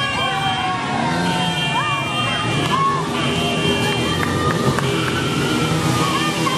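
Street commotion: motor vehicle engines running, people's voices, and a high tone that sounds in segments about a second or so long, repeating roughly every two seconds.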